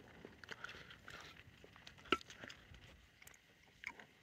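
Faint handling noise: a few light knocks and rustles as an aluminium beer can is moved and set down on a wooden tree stump.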